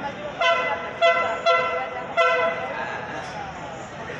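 Horn of an approaching train sounding four short blasts, a chord of several tones.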